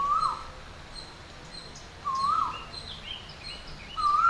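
A bird calling: a short whistled note that ends in a quick downward flick, repeated about every two seconds, with fainter, higher chirps in between, over a steady background hiss.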